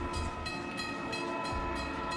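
Railway level-crossing warning bell ringing in rapid, even strokes over a steady ringing tone: the crossing is activated, warning of an approaching train.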